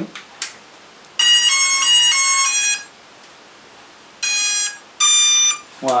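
Hubsan Zino Mini Pro drone powering on after a long press of its power button: a quick tune of several electronic beeps lasting about a second and a half, then two more single beeps a little later.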